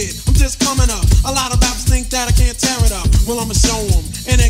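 Old-school hip hop track: a vocal delivered over a drum beat with a heavy, regular kick.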